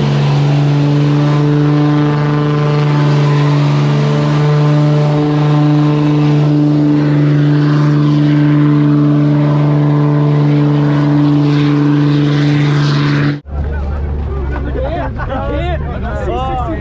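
Lifted pickup truck doing a smoky burnout, its engine held at steady high revs on one unchanging note over a hiss of spinning tyres. About 13 seconds in, the sound cuts abruptly to a crowd shouting over a lower engine rumble.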